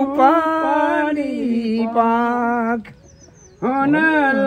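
A singer holding one long note of a folk song, wavering at first and then steady; the voice breaks off for about half a second near the end and then starts a new phrase.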